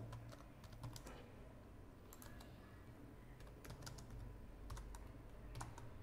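Faint typing on a computer keyboard: irregular keystrokes, some single and some in quick clusters.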